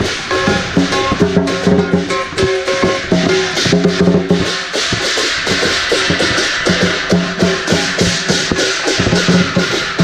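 Chinese lion dance percussion: a big drum, gongs and cymbals beaten in a fast, steady rhythm, with held ringing tones between the strikes.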